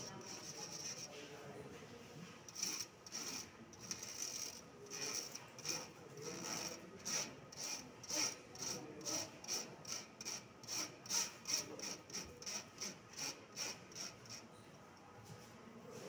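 Dry granules being rubbed by hand through the wire mesh of a brass 20-mesh sieve: a rhythmic scraping of about two to three strokes a second that starts a couple of seconds in and stops shortly before the end.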